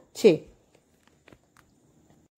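A short spoken syllable with a falling pitch right at the start, then a pause of near silence broken by a few faint, isolated clicks.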